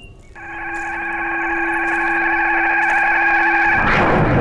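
A sustained synthesized chord of several steady pitches swells in loudness, then breaks off near the end into a sudden broad crash.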